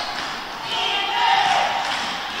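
Crowd chatter echoing in a gymnasium, with a basketball being dribbled up the court.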